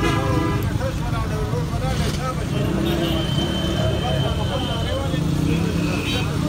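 Busy street-market din: a steady rumble of road traffic under the chatter of people around the stalls, with a thin steady high tone for about two seconds midway.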